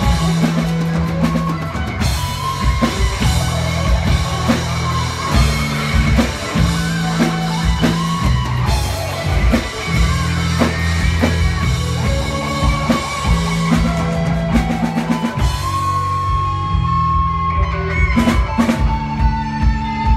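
Live rock band playing an instrumental passage: a drum kit with electric guitar over held low notes. The drum hits thin out a few seconds before the end, leaving a long held note.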